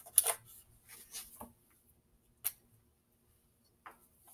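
Handling of a small dry-erase whiteboard and marker: a few soft rustles, then a sharp click about halfway through and another near the end.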